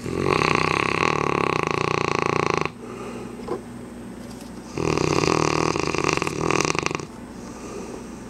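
Sleeping mastiff snoring loudly: two long snores of about two seconds each, the second starting about five seconds in.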